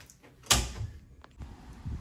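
A door shutting with one sharp thud about half a second in, followed by a faint click a little later.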